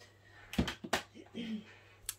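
Two quick knocks about a third of a second apart, from objects being handled on a craft table.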